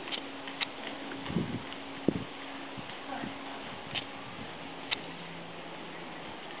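Faint, irregular hoofbeats of a PRE stallion trotting on soft indoor arena footing, over a steady low hum.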